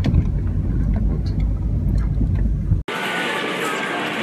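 Steady low rumble of wind buffeting a phone's microphone outdoors, cut off abruptly about three seconds in by the chatter of people inside a busy shop.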